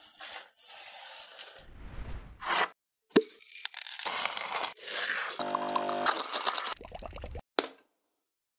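Sound effects of coffee beans being swept, poured and ground, with rattling, crunching and scraping noises and a sharp click about three seconds in. A brief pitched tone comes about two-thirds through, and the sound cuts off suddenly just before the end.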